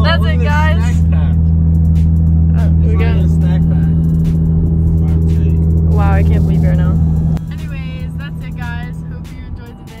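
Steady low drone of a car's engine and road noise heard inside the cabin while driving. It cuts off abruptly about seven seconds in, leaving a quieter background.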